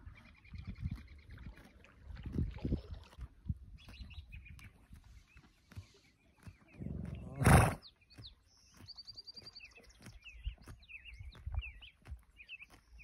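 A yearling horse grazing close by, tearing and chewing grass with scattered low crunches, and giving one loud blowing snort about seven and a half seconds in. Songbirds chirp and trill throughout, busier in the second half.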